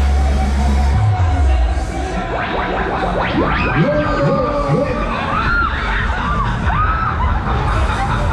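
Funfair ride music with a heavy held bass that stops about a second in, then riders on the Dance Jumper screaming and shrieking over the music as the ride spins and jumps.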